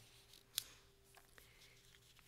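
Near silence: quiet church room tone with a faint steady hum. One sharp click comes about half a second in, followed by a couple of fainter ticks.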